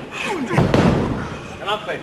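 A heavy thud of a wrestler's body on the ring mat about half a second in, amid shouting voices from spectators.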